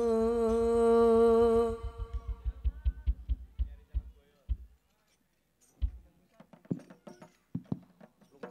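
A male sholawat singer holds one long steady note that ends about two seconds in, over fast low drumbeats that thin out and stop about halfway through. The rest is quiet apart from a few scattered soft taps.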